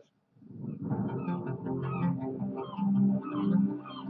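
Background music with electric guitar and bass, fading in after a moment of silence about a second in.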